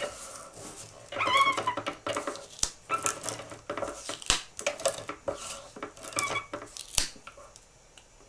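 A hand-held adhesive tape runner being pulled along the edge of a sheet of paper on a wooden table, with scraping and a series of sharp clicks. A couple of brief high, wavering squeaks come in as well.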